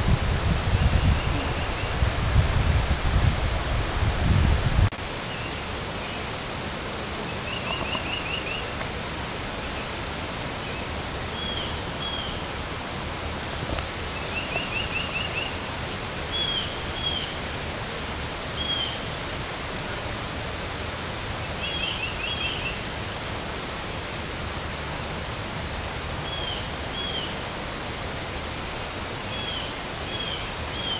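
Wind buffeting the microphone with a low rumble for about five seconds, cutting off suddenly. After that comes a steady outdoor hiss, with a bird calling every few seconds in short high trills and pairs of quick chirps.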